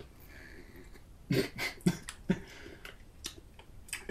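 Pickle brine being sipped from a tin can, quiet at first. About a second and a half in, a brief laugh and a few short breathy bursts follow.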